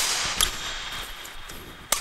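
Sharp knocks of a badminton racket hitting a shuttlecock: a loud one at the start, a faint one about half a second in, and another loud one just before the end, each dying away briefly in the hall.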